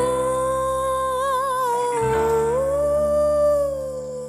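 Female voice holding one long sung note with vibrato, dipping slightly about two seconds in and then rising a little, over sustained accompaniment from the band.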